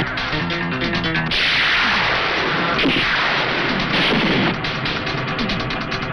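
Fight-scene film soundtrack: dramatic background music with dubbed punch and impact sound effects. A loud rushing swell comes about a second and a half in, followed by several sharp hits.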